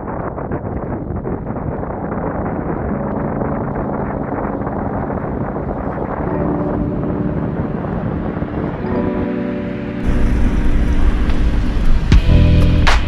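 Wind rushing over the microphone of a camera mounted outside a 4x4 driving on a gravel track. Background music fades in about three seconds in, and a louder, brighter mix of music and driving noise takes over near the end.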